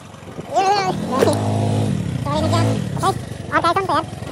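A motor vehicle engine revving up and falling back twice in the middle, with young men's voices shouting before and after.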